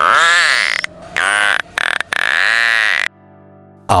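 Narwhal calls: three pitched calls, each rising and then falling in pitch, the last the longest.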